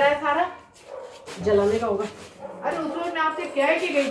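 Loud, raised speech from a woman, in three stretches with short pauses between them.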